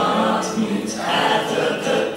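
A class of teenage students singing together as a group choir, holding sustained notes.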